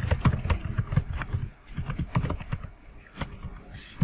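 Typing on a computer keyboard: a run of irregular, quick key clicks.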